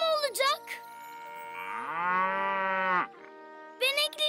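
A cow mooing once, a long moo starting about a second and a half in, rising in pitch at its start and then held. The cow is about to give birth to a calf.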